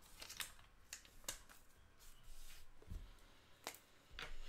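Faint handling noise at a desk: a few scattered soft clicks and rustles, with a dull thump about three seconds in.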